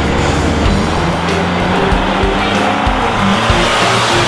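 1989 Chrysler Phantom Turbo with its 2.2-litre turbocharged four-cylinder driving past close by: engine and road noise that come in abruptly and stay loud and steady.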